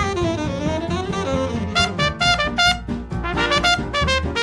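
A small swing jazz band of trumpet, saxophones, trombone, piano, bass and drums plays an instrumental passage with the horns to the fore. A horn line glides down and back up in the first second and a half, then the band plays short, clipped phrases together.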